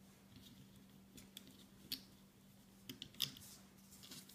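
Faint small clicks and taps of a plastic hook and rubber loom bands being handled on a plastic Rainbow Loom: a handful of sharp ticks, the loudest about three seconds in. A low steady hum runs underneath.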